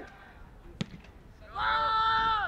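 A football is struck once, a single sharp thud a little under a second in. About halfway through, a loud, long shout held on one pitch cuts in and is the loudest sound.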